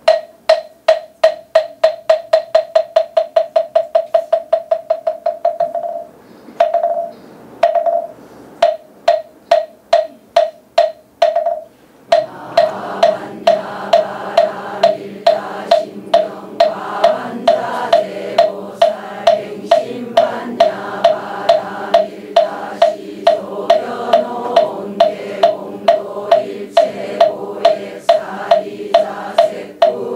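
Korean Buddhist moktak (wooden fish) struck in a fast, fading roll, then in spaced strokes that speed up again. From about twelve seconds in, a congregation chants in unison over a steady moktak beat of roughly two to three strokes a second.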